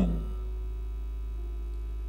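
Steady low electrical hum, mains hum from the microphone and sound system, with a faint steady tone above it.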